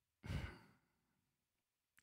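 A man's short sigh, one soft breathy exhalation lasting about half a second.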